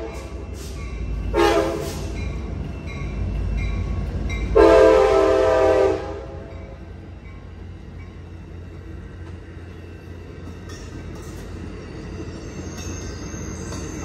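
Amtrak F59PHI diesel locomotive's air horn sounding a short blast about a second and a half in and a longer blast about four and a half seconds in, over the low rumble of the passing locomotive. After that the steadier, quieter rolling of the bilevel passenger cars going by.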